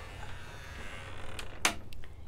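A wooden greenhouse door with a metal gate latch being opened and passed through: a faint creak, then two sharp clacks near the end.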